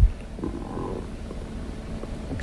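A brief pause in speech: low, steady rumbling background noise on a studio microphone, with a faint short sound about half a second in.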